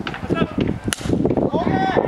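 A baseball bat hits a pitched ball once, a sharp crack about a second in. Voices shout right after it.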